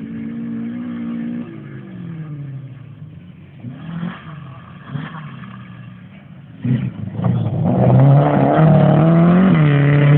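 Rally car at full speed on a loose dirt stage, its engine revving and dropping as it shifts through the gears on approach. About seven seconds in, as the car passes close by, it gets much louder, with the pitch still rising and falling.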